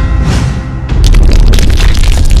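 Cinematic logo-sting music with a deep boom over a low rumble; about a second in a second loud hit lands, followed by a spray of short crackling ticks.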